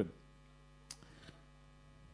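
Faint, steady electrical mains hum, with a single faint click about a second in.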